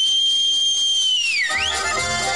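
One long, piercing whistle held on a steady high note, dipping in pitch and rising again about one and a half seconds in. Accordion folk music starts up under it as it ends.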